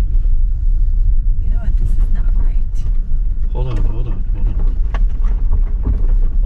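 Steady low rumble of an electric SUV's tyres rolling over rutted, muddy dirt, heard from inside the cabin, with a few sharp ticks.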